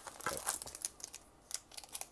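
Foil Pokémon booster pack wrappers crinkling as a sealed pack is worked loose and pulled out of a booster box: a quick run of short, crisp crackles.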